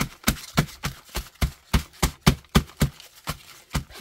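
A crumpled wad of gesso-covered paper pounded repeatedly onto a stack of brown paper-bag pages on a table, about four knocks a second.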